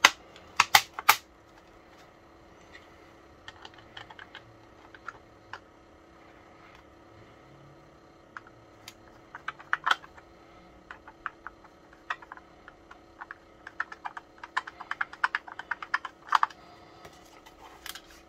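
Light plastic clicks and taps from a small plastic transistor radio as it is handled and its back cover pressed into place, a few sharp clicks about a second in. Small ticking from a screwdriver turning the cover screw follows, with bursts of quick clicks around the middle and again near the end, over a faint steady hum.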